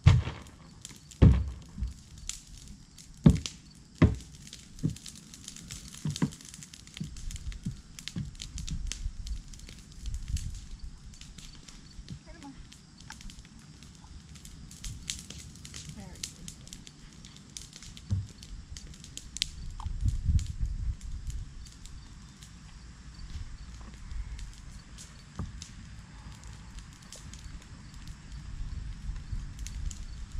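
A few sharp knocks in the first four seconds as a mounting block is set down on the ground, then the crackling of a nearby brush-pile fire with low rumbling underneath. Near the end, a horse's hooves are walking on dirt.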